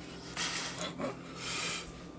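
A person breathing sharply through the nose twice, two short hissy breaths about a second apart.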